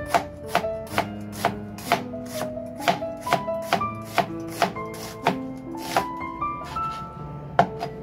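Chef's knife slicing an onion into strips on a plastic cutting board: sharp knife strokes knocking on the board about twice a second, with a short pause near the end.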